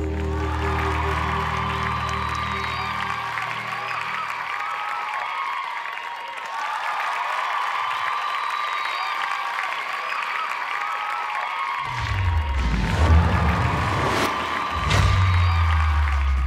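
Applause and cheering after a song ends, over the song's last low chord fading out in the first few seconds. About twelve seconds in, a bass-heavy music sting with a few sharp hits comes in.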